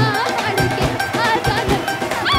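Punjabi folk dance music: a dhol beats a quick, even rhythm under a high, gliding melody line, with a metallic clink sounding on the beat.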